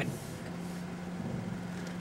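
A car's engine running with a steady low hum, heard from inside the cabin.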